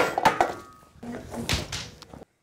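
A broom whacked down in a mock fight: a sharp thwack at the start with a brief ringing after it, then a second heavy thud about a second and a half in.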